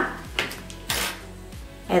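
A light click and a short rustle of plastic packaging as the plastic insert is taken out of a false-eyelash box, over background music with a steady low beat.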